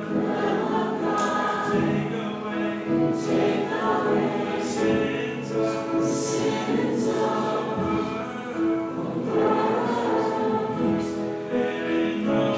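Choir singing a slow hymn with acoustic guitar accompaniment.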